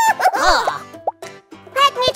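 Cartoon sound effect: a plop with quick pitch glides about half a second in, over light background music.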